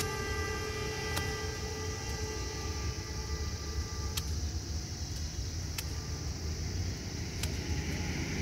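A held horn tone fading out over the first two seconds, over a steady low rumble. Then four sharp knocks, about a second and a half apart: paddy sheaves beaten against a slab to thresh out the rice grain.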